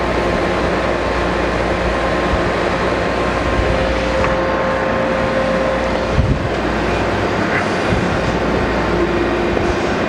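Rush Model 380 drill grinder running, a steady mechanical whir with a hum and a few faint steady tones.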